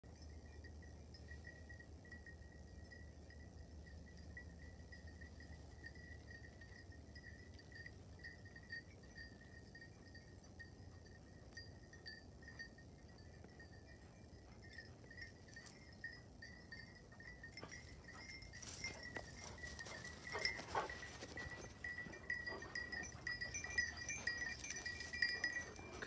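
Bells on the dogs' collars ringing and jingling as they move. The ringing is faint at first and grows louder and busier about two-thirds of the way through as the dogs come close.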